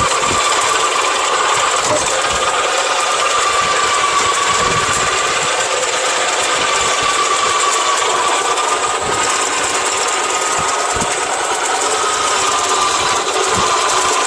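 Niyama electric salad maker's motor running with a steady whine that wavers slightly in pitch while its cutting disc slices a bitter gourd pushed down the feed chute.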